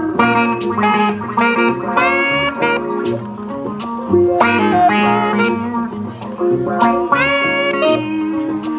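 Acoustic-electric guitar and saxophone playing a jazzy tune together: picked guitar chords run throughout, and the saxophone comes in over them with melody phrases about two seconds in, halfway through and near the end.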